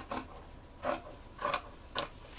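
Scissors cutting through sweatshirt fabric around a paper pattern: about four short snips, roughly one every half second.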